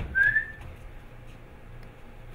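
A short whistled note from a person, rising slightly and lasting about half a second, just after the start; then only faint stage and room noise.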